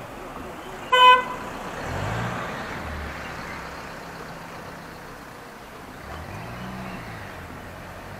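A single short vehicle horn toot about a second in, followed by road vehicles passing, their engine note rising and falling twice.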